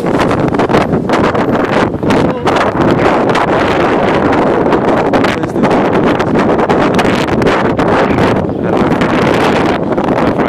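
Wind blowing across a handheld phone's microphone, a loud, continuous noise with no pauses.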